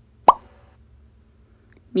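A single short plop, a quick upward-sweeping blip, about a quarter of a second in; the rest is quiet.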